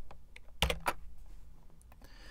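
A few keystrokes on a computer keyboard, heard as separate clicks, the two sharpest about half a second and just under a second in.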